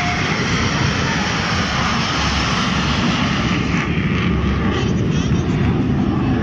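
Surya Kiran team's BAE Hawk jet trainers flying over in formation, their turbofan engines making a loud, steady jet roar.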